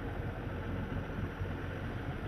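Steady rushing noise of wind and choppy water around a keelboat sailing hard, with a low rumble underneath.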